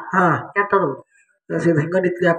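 A performer's voice through a stage microphone, delivering lines with drawn-out falling inflections. It breaks off for about half a second, a second in, then resumes.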